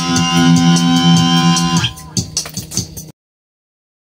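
Instrumental guitar music: a held guitar chord rings until it stops about two seconds in. A few quieter beats follow, then the sound cuts off abruptly a little after three seconds, ending the track.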